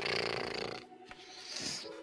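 A man's wheezy, breathy laugh into a microphone: a raspy, rattling exhale for about the first second, then a fainter one near the end.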